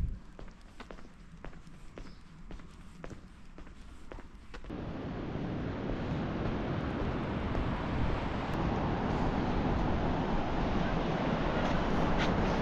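Footsteps on pavement, soft steps about twice a second over quiet street ambience. About five seconds in the sound cuts to a steady, louder rushing noise.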